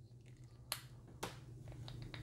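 Faint clicks of plastic toy parts as a small toy gun is pegged onto a little plastic roller trailer: two distinct clicks about half a second apart, then a couple of fainter ticks near the end.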